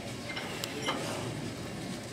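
Quiet hall ambience, a low even background hush with two faint clicks a little past half a second in.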